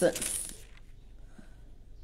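A man's spoken word ends at the start with a short, high, hissy rustle over it, then a quiet room hum.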